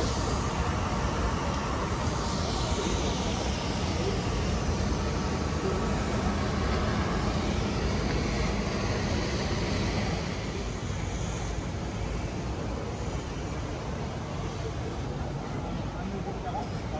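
Busy city street ambience: a steady rumble of traffic with indistinct voices of passers-by, easing slightly about ten seconds in.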